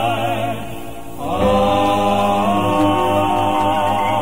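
Male gospel quartet singing held four-part chords with vibrato and no clear words. About a second in the chord fades, and a new sustained chord comes in.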